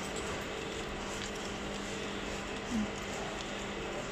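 Zipper pin-box frame-removing and combination machine running with a steady hum: an even noise with two faint held tones, one low and one a little higher.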